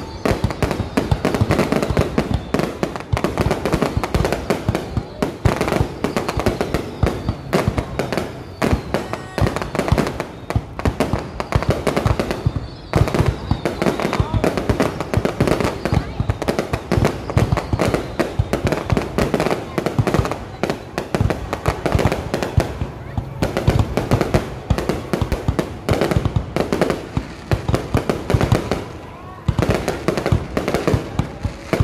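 Aerial fireworks display: a dense, continuous run of bangs and crackles from shells bursting overhead, with a short lull near the end.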